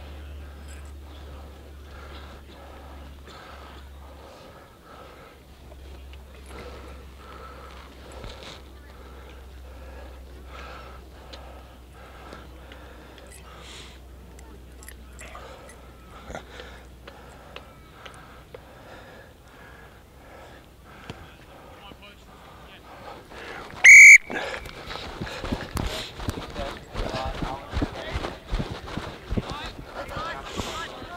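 Referee's whistle: one short, very loud blast about three-quarters of the way through, over faint distant voices. Rough crackling noise follows it to the end.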